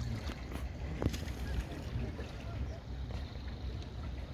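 Low steady rumble on a small boat moving across open lake water, with a light knock about a second in and faint voices in the background.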